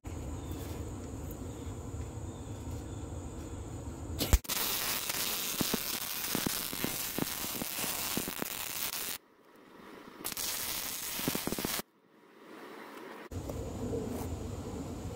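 Arc welding a caster bracket to a steel cabinet frame: the arc strikes about four seconds in and runs with a steady crackling hiss for roughly five seconds. After a brief pause, a second, shorter weld of about a second and a half follows. A low steady rumble underlies the quiet parts before and after.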